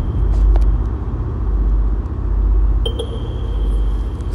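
A loud, steady low rumble, joined by a thin high tone about three seconds in.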